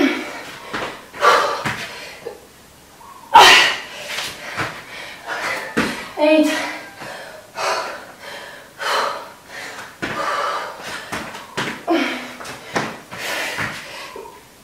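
A woman breathing hard with voiced exhalations through jump lunges and burpees, with thuds of her feet and hands landing on the exercise mat, the loudest about three seconds in.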